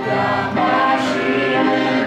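A woman and a man singing a hymn together in a duet, holding long notes.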